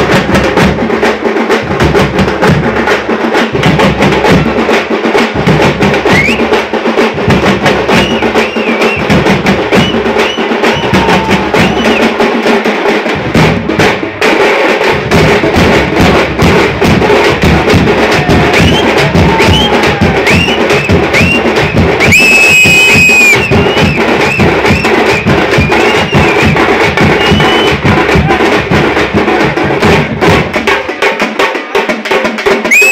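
Tamte frame drums beaten fast with sticks in a dense, driving rhythm, with a deep bass drum under them. Short high whistle-like calls come over the drumming, and there is one long shrill tone about two-thirds of the way through.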